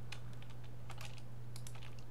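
Scattered light clicks from a computer keyboard and mouse, a few per second, over a steady low hum.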